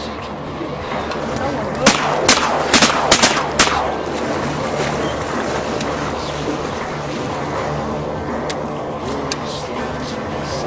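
A quick string of about seven shotgun shots within less than two seconds, about two seconds in, over steady background music.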